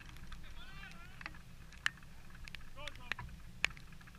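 Football being kicked in play: several sharp knocks, the loudest near the middle and near the end, among faint shouts from players. A low wind rumble on the microphone runs underneath.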